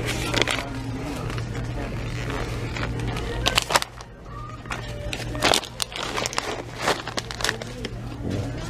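Shop-floor ambience: faint background music over a steady low hum, with several sharp clicks and knocks scattered through, typical of a shopping cart being pushed and goods being handled.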